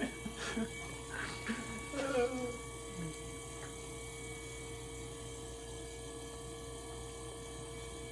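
Electric pottery wheel's motor humming steadily as the wheel spins, with a brief laugh about two seconds in.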